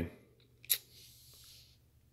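A single sharp click as the RAS47's AK-pattern bolt carrier is handled, followed by a few faint ticks.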